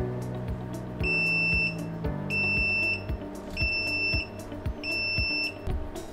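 Speco NR Series NVR's built-in buzzer beeping four times, each a high steady beep of about half a second, a little over a second apart: the alarm for a missing-object analytic event. Background music with a steady beat plays underneath.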